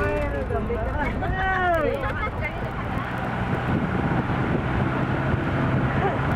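Engine and tyre rumble of a vehicle heard from inside its cabin while driving along an unpaved road, a steady low hum.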